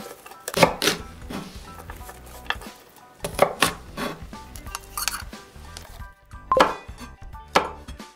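Chef's knife cutting red chili peppers on a wooden cutting board: sharp knocks of the blade striking the board at irregular intervals, a few in quick pairs.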